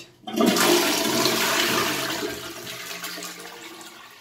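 Wall-hung AM.PM toilet flushed from its Grohe concealed cistern: a rush of water starts about a third of a second in, is loudest for the first two seconds, then tapers off.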